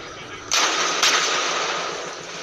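An explosion goes off about half a second in. A second sharp crack follows half a second later, then a long rumble that slowly fades.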